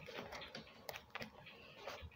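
A series of light, irregular clicks and taps, like keys being typed, over faint background noise.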